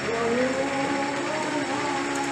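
Steady amusement-park din with several wavering pitched tones that drift up and down.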